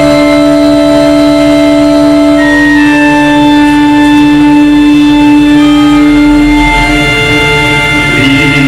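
Loud instrumental music with long held notes, the chord above a steady low note shifting about three seconds in.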